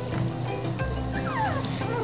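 A three-week-old Labrador retriever puppy whimpering, a few high whines falling in pitch in the middle, over background music.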